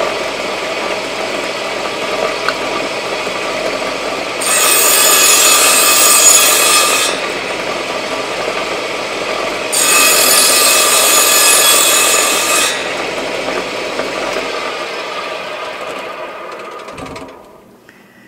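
Table saw running, with two cuts through a small wooden coaster blank, each about three seconds long and louder and brighter than the free-running blade. Near the end the saw is switched off and winds down.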